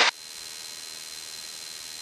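Steady, even electronic hiss with a thin high tone running through it, with no engine drone to be heard; it sounds like noise on a cockpit audio feed.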